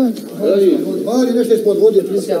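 Several people talking at once, voices overlapping without a break.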